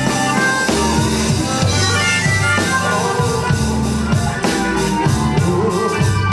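Live blues-rock band playing, with a harmonica carrying the lead over bass guitar, keyboard and a steady drum beat.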